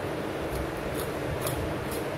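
A beagle licking vanilla ice cream from a stainless steel bowl: wet tongue clicks and smacks about twice a second.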